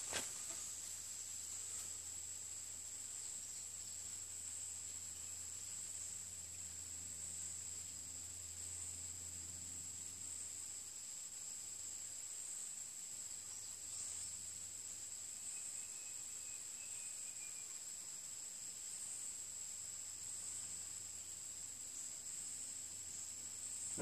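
Steady high-pitched insect chorus, a continuous shrill trill with slight regular swelling, under a faint low hum that fades out about halfway through.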